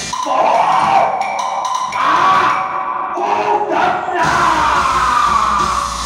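Music from a hát bội (Vietnamese classical opera) performance: a wavering, sliding melodic line over a steady accompaniment.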